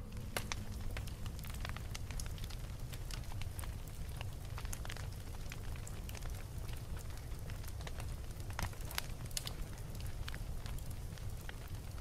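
Crackling fire sound effect: a steady low rumble with irregular sharp crackles and pops throughout.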